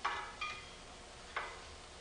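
Metal clinks of vice grips and a steel centering spring against the handler's frame as the spring is pulled down and pushed into its welded holder: a sharp clink with a brief ring at the start, a fainter ring just after, and a single click a little past halfway.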